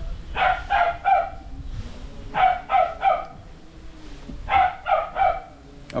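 A dog barking in runs of three quick barks, a run about every two seconds.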